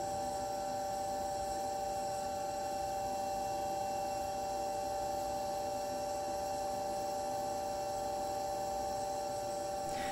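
A steady hum made of several held tones, even in level throughout, with no crackle or pop from the burning sample.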